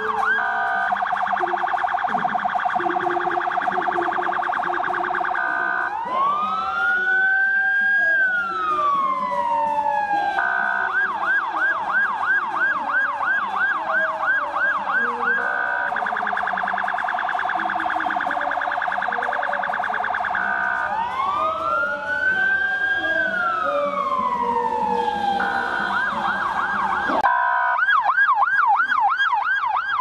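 Electronic siren cycling through its tones in turn: fast repeated yelps, then a rapid warble, then a slow wail that rises and falls once. The cycle repeats twice, breaks off for a moment near the end, and starts again with yelps.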